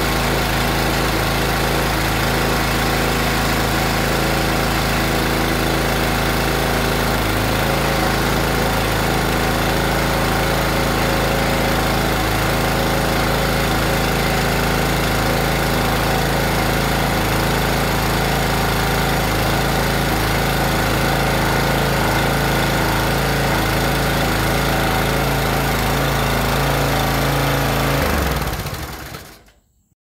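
The 7-horsepower single-cylinder engine of a Swisher 22-ton log splitter running steadily, with slight shifts in its note now and then. The sound fades out near the end.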